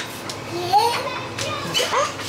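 A baby vocalizing happily: a few high, gliding squeals and babbles, with a short rising call near the end.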